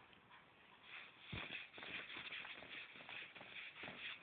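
Faint, uneven rustling and shuffling, with a soft click about a second and a half in.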